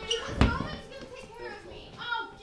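Children's voices and play commotion, with one loud thump about half a second in.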